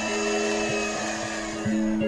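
Electric hand mixer running, its beaters whipping cream in a glass bowl with a steady motor hum and a faint high whine, over background music of slow held notes.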